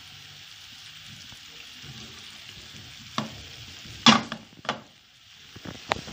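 Sugar caramelizing in a stainless steel pan over a medium gas flame: a steady bubbling sizzle as the melted sugar cooks toward caramel. A few sharp knocks cut through it, the loudest about four seconds in.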